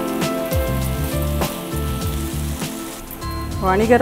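Background music with a steady bass line over food sizzling in a frying pan as it is stirred, with a few sharp clicks of the spatula against the pan. A woman starts speaking near the end.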